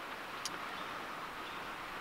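Faint, steady outdoor background hiss, with a single light click about half a second in.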